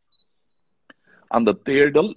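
Near silence for just over a second, then a man's voice starts speaking.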